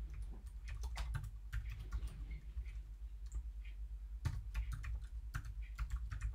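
Typing on a computer keyboard: irregular runs of quick key clicks as text is entered.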